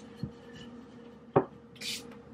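Wooden rolling pin on a floured wooden board: a soft thump as it rolls over the dough, then a sharp wooden knock as the pin is set down about halfway through, followed by a brief rubbing hiss near the end.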